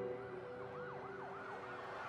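Faint emergency-vehicle siren, its pitch sweeping rapidly up and down in a repeated yelp.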